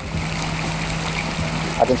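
Fountain water splashing, a steady rush, with a low steady hum underneath.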